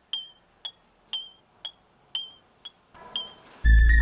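Clock ticking, a sharp tick-tock about twice a second with louder and softer ticks alternating. About three and a half seconds in, a loud, low, sustained droning chord swells in over it.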